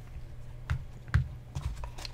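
Handling noise from unpacking a cardboard presentation box with a foam insert: a few light knocks and taps, the sharpest about a second in, over a steady low hum.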